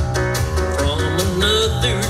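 Live country band playing an instrumental passage: acoustic guitar and fiddle over a steady bass and drum beat, with a bending melody line in the second half.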